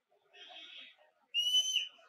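A single shrill whistle, about half a second long, starting abruptly a little past the middle and dipping slightly in pitch as it ends.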